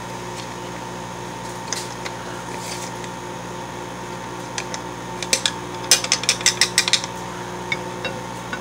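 Spatula scraping and mashing ground meat in a frying pan: scattered clicks, then a quick run of about ten sharp scrapes in the second half. Under it, the steady hum of a running microwave oven.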